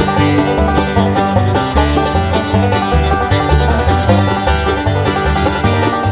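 Bluegrass band playing an instrumental passage: quickly picked acoustic guitar, banjo and mandolin over a pulsing bass line, with no singing.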